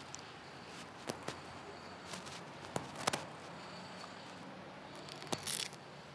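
Quiet outdoor hush with a few faint, sharp clicks, one of them a putter striking a golf ball on a putting green.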